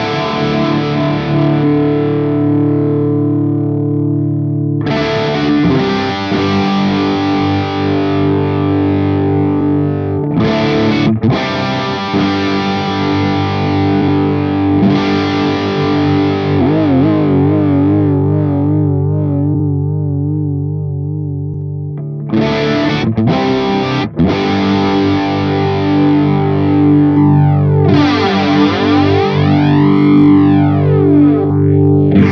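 Electric guitar played through a NUX MG-300 multi-effects modeller, first with a chorus effect, then from about halfway with a vibrato effect that makes the held notes waver in pitch. Near the end a flanger effect adds a sweeping, rising-and-falling whoosh to the sound.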